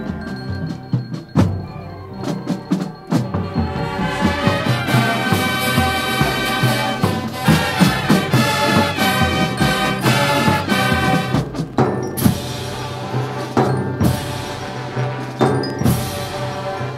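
High school marching band playing, with brass and wind notes over frequent drum and percussion strikes. The sound is thinner at first and becomes fuller and louder about four seconds in.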